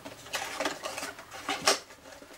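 Cardstock box lid being pushed down over its base: card rustling and scraping as the lid slides on, with a few light taps on the cutting mat and a sharper tap near the end.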